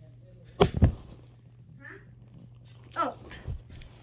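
Two sharp knocks in quick succession about half a second in, as a child moves about right next to the propped-up phone, then a brief vocal sound from him near the end, over a low steady hum.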